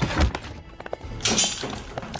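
Film sound effects of a violent entry: a heavy thud at the start, a few quick sharp knocks, then a loud crashing rush about a second and a half in, over background music.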